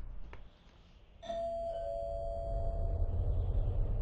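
Two-tone ding-dong doorbell chime: the first, higher note sounds about a second in and a lower note follows half a second later, both ringing on and fading over about two seconds. A low rumble swells underneath.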